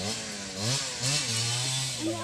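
Dirt bike engine revving, its pitch rising and falling several times before holding steadier.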